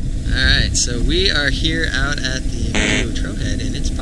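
A person talking, half-buried under a heavy, steady rumble of wind buffeting the microphone.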